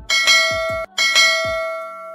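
Notification-bell sound effect from a subscribe animation: a bright bell rung twice. The first ring is cut short before a second, longer ring that slowly fades. Short low falling booms sound underneath each ring.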